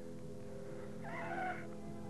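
Film soundtrack of a lightsaber duel: a steady electric lightsaber hum, with a short wavering higher cry about a second in.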